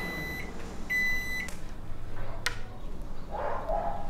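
Microwave oven beeping twice, two steady high electronic tones of about half a second each. A single sharp click follows a second later.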